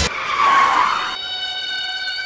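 Car tyres skidding to a stop, a hissing screech that swells and dies away within about a second, over a steady held tone.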